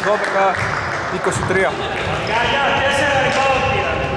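Basketball bouncing on a wooden court in a large echoing sports hall, under voices on the court.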